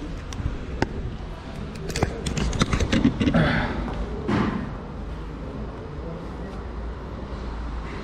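Handling noise: a string of sharp clicks and knocks in the first three seconds as a hand-held camera is moved about, with a brief muffled voice in the middle. Then a steady low background hum.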